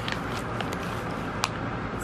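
Steady background hiss with a few faint taps as cosmetics are handled in a cardboard box, the clearest about one and a half seconds in.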